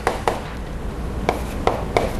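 Chalk writing on a blackboard, heard as a few sharp, irregularly spaced taps.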